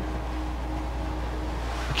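Room tone of a small, empty indoor room: a steady low hum with a faint, even hiss and a faint steady higher tone.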